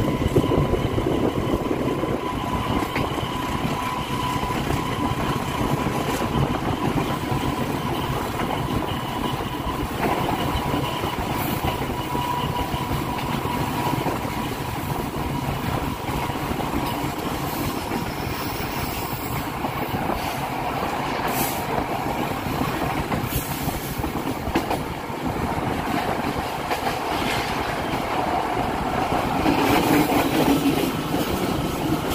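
Diesel-hauled passenger train running along the track, heard from a carriage: a steady rumble of wheels on rails, with a thin steady whine through the first half that fades out. The sound swells slightly near the end.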